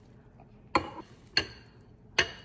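A glass mixing bowl knocks twice against the rim of a stainless steel stand-mixer bowl as peas and carrots are tipped in: two sharp clinks with a short ring, a little over half a second apart.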